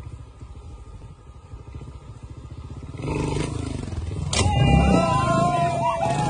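Trials motorcycle engine running with a rapid low pulse, then getting louder about three seconds in as the bike drops off a wall, a single sharp thud as it lands, and splashing through water with voices shouting over it near the end.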